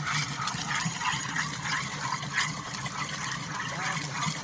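Water spurting from an air-lift pump's discharge pipe and splashing into a plastic water tank, the flow coming unevenly.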